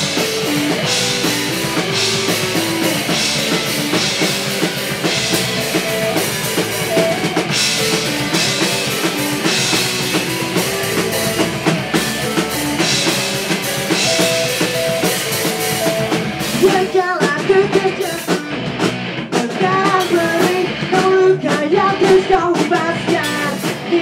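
Pop-punk band playing live: a drum kit and electric guitars driving a full-band song intro. There is a brief break about two-thirds of the way through, after which the band comes back in.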